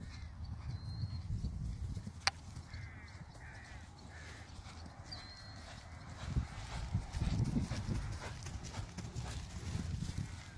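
Hoofbeats of a black quarter pony cantering on grass turf, with one sharp crack about two seconds in, a polo mallet striking the ball. The hoofbeats get louder from about six seconds in as the pony comes close.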